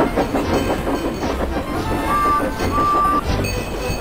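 Passenger train coaches rolling slowly past close by, their wheels clicking over the rail joints with a low rumble underneath.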